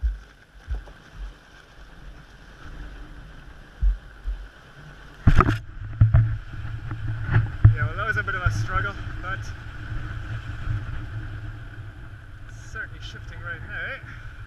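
Wind gusting on the microphone during a Daisy rotary kite launch, with a cluster of sharp knocks about five seconds in, then a steady low rumble with scattered clicks as the kite rig lifts and turns in the wind.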